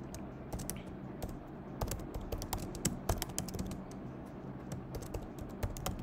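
Typing on a computer keyboard: a quick run of key clicks, a short lull around the middle, then more keystrokes near the end.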